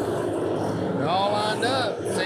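Engines of a pack of factory stock dirt-track race cars running at speed. A voice talks over them from about a second in.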